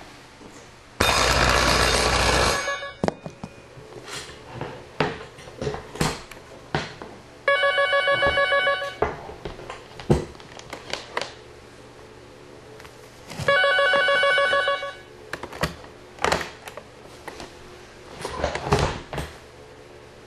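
Electric bells of a Wheelock KS-16301 telephone bell system ringing in the telephone ring cadence: three rings about six seconds apart, each about a second and a half long. The first ring is harsh and rattling, the next two a steadier buzzing tone, with light clicks in the gaps between rings.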